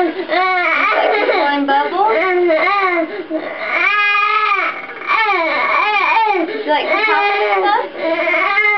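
Young child crying in distress: a continuous string of loud, high-pitched wails, each arching up and then down in pitch, broken by a short catch of breath about five seconds in.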